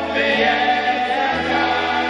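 Choral singing of a slow melody over held low accompaniment notes, the bass note changing twice.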